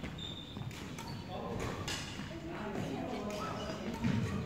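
Badminton rackets striking shuttlecocks as sharp clicks, a few brief high squeaks of shoes on the wooden court floor, and indistinct voices in a large hall.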